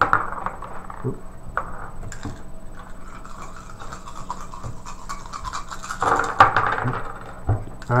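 A handful of War of the Ring action dice rolled and clattering onto the board, loudest about six seconds in, with low talk around the table.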